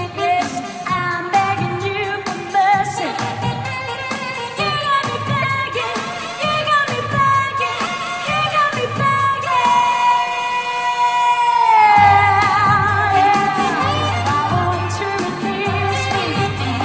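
Live pop-soul performance: a woman singing with a saxophone over an amplified backing track. Near the middle a long note is held, and the bass comes back in strongly about twelve seconds in.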